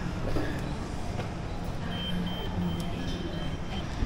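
A walk-through security metal detector giving a steady high electronic beep for about two seconds, starting about halfway through, over the steady hum and murmur of a busy indoor shopping mall.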